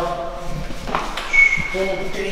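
Lift arrival chime: a single high ding that rings on and fades, about a second and a half in, with a click just before it.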